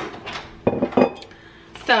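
Glass bottles and a metal cocktail shaker being handled and set down on a countertop: a sharp knock at the start, then two quick clinks about a second in.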